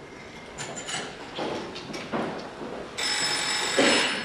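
Telephone bell ringing: one ring about a second long that starts suddenly about three seconds in, after a few faint knocks and clinks.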